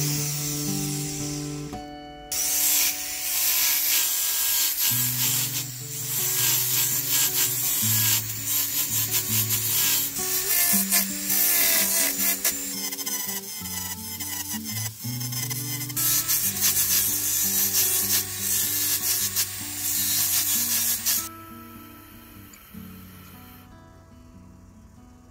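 Sanding band on a jeweller's rotary handpiece grinding the inside of a silver ring. The rasping hiss comes in two stretches, with a short break about two seconds in, and stops about three seconds before the end. Guitar music plays underneath.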